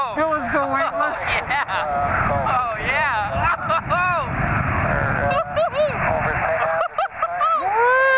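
Excited whooping and exclaiming from the pilot and passenger of a weight-shift microlight trike, over a steady rush of wind on the microphone. The engine is shut off and the trike is gliding down through a steep wing-over.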